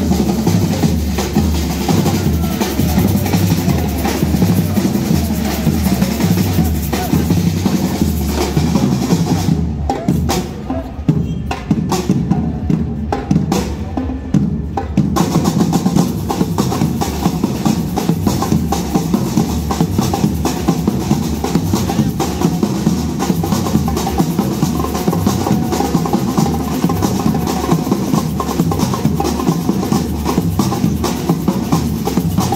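A marching drum troupe playing together: large bass drums struck with mallets and a snare drum with sticks, in a steady, driving rhythm. The sound goes briefly thinner and quieter about ten seconds in, then returns to full strength.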